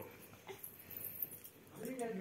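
Faint knocks and rustling, then a drawn-out, whining voice starts near the end.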